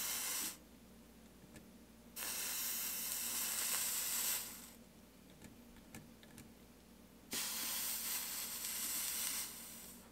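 Hakko FX-601 soldering iron tip sizzling as it is run over fluxed solder bead lines on stained glass. The hiss comes in three bursts: one ending just after the start, then two of about two seconds each, about two and seven seconds in.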